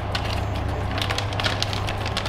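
Metallic anti-static bag crinkling and crackling in the hands as a memory module is slid into it, a scatter of sharp crackles over a steady low hum.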